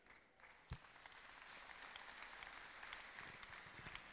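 Faint applause from a church congregation, building up about a second in and holding steady, after a single soft knock.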